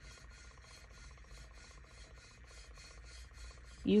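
Plastic Mardi Gras bead necklace held against a spinning tumbler, the beads dragging over the wet acrylic paint with a faint, fast rasping tick, about six a second.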